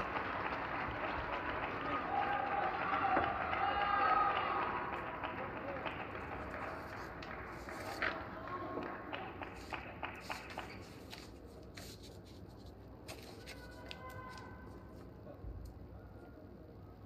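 Arena crowd applauding and calling out after a point, fading away over about six seconds, then a few scattered claps and sharp taps.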